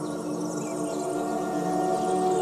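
Ambient background music of long, held droning tones with faint shimmering high notes above.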